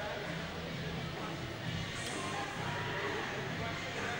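Indistinct crowd voices and chatter in a pool arena, with music playing in the background.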